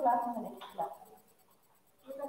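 A person's voice speaking briefly, then a pause in a small room.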